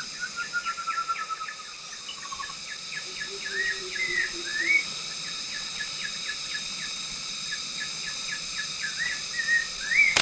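Forest bird calls over a steady high insect drone: a descending run of whistled notes in the first two seconds, then rapid repeated chirps with a few rising slurred whistles.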